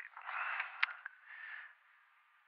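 A person breathing heavily into a close microphone, two breaths, with a single sharp click near the end of the first.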